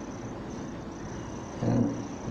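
Pause in a man's speech: steady low background hiss with a faint high steady tone, then a brief sound of his voice near the end.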